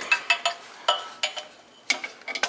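Handful of small, sharp clicks and light clinks as an inline spark plug tester is worked off the spark plug and the plug wire boot by hand.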